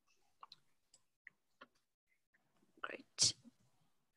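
Quiet pause on a video-call microphone with a few faint, short clicks, then a brief breathy noise a little before three seconds in.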